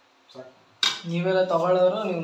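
A sharp clink of a steel utensil or plate, then a man's long closed-mouth "mmm" of approval as he tastes food.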